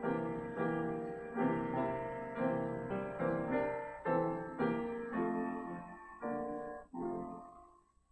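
A piano plays a hymn introduction: chords struck about twice a second, each dying away, slowing and fading out near the end.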